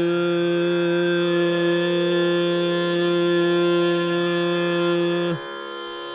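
Carnatic classical music in raga Neelambari: one long, steady held note, unornamented, sustained for about five seconds. It then breaks off, leaving a quieter steady drone underneath.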